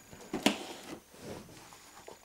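Cardboard toy box being handled and turned around on a table, with a light knock about half a second in and a few fainter rustles.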